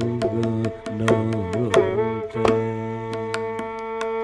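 Carnatic thanam in raga Kalyani: a male voice improvising on thanam syllables, accompanied by mridangam and ghatam strokes. About two and a half seconds in, the melody settles on one long held note while the percussion keeps striking.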